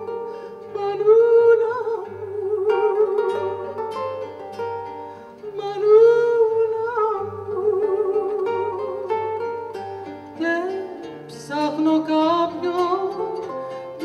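A woman singing a slow song with vibrato, accompanying herself on a nylon-string classical guitar with plucked bass notes and chords.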